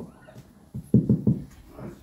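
A dog barking: a quick run of about four short, loud barks about a second in, with a few fainter ones around them.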